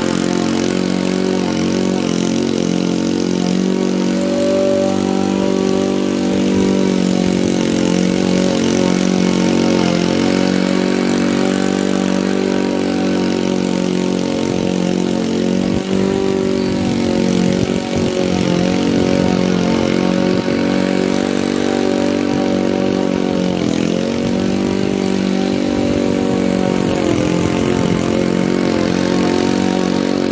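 Honda walk-behind lawn mower's single-cylinder four-stroke engine running at a steady pitch while cutting overgrown grass. There are a couple of brief dips about halfway through.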